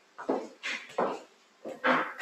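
Short animal calls repeated in quick succession, about five in two seconds, with brief gaps between them.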